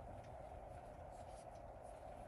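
Faint scratchy rubbing of yarn drawn over a metal crochet hook, with a few soft ticks scattered through, over steady low background noise.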